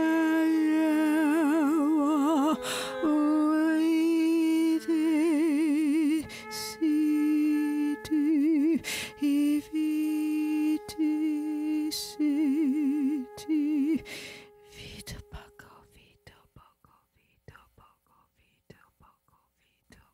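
A woman's voice humming a low held note in drawn-out phrases, some held steady and some with a wide, wavering vibrato. A second, steadier note is held alongside it. The humming stops about 14 seconds in, leaving faint scattered clicks.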